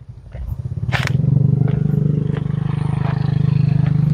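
A small engine running steadily with a low, fast-pulsing hum. It grows louder over the first second and then holds level. A single sharp click comes about a second in.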